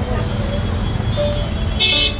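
Busy street ambience of crowd chatter and traffic rumble, with a short loud horn toot near the end.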